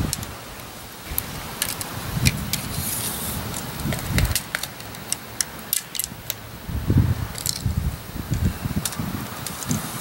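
Scattered sharp clicks and light rattles of a fishing rod being handled and a steel tape measure being drawn out along it, over low, uneven rumbling noise.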